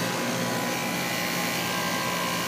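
Guardian 4-ton central air conditioner condenser unit running: the A.O. Smith condenser fan moving air and the Bristol compressor going, a steady rush of air with a steady hum under it.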